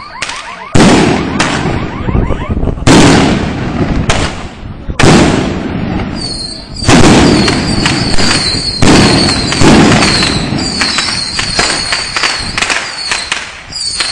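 Firecrackers going off on pavement: a series of loud, sharp bangs, spaced about a second apart at first, then a rapid run of explosions from about seven seconds in.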